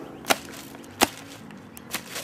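Sneakers stamping down on a leafy branch lying on a concrete path: two sharp slaps, about three quarters of a second apart, with a lighter one near the end.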